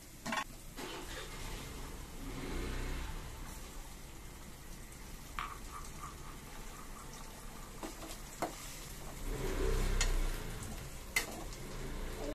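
Egg and chopped vegetables frying in an aluminium kadai on a gas stove. A few sharp clicks and taps come through, and near the end a spatula stirs in the pan.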